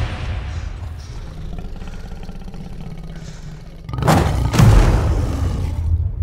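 Trailer sound design: a low sustained rumble, then two heavy booming hits about half a second apart, a little after four seconds in, that ring out.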